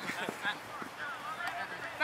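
Distant voices of players calling out, with no clear words.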